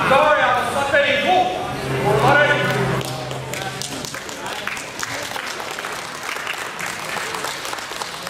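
Spectators and coaches shouting during judo groundwork, then scattered clapping and crowd noise echoing in a gym hall.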